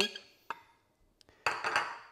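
A metal spoon on white ceramic dishes: a light clink with a brief ring about half a second in, a faint tick, then a short scraping rattle near the end as cooked radish pieces are spooned into a bowl.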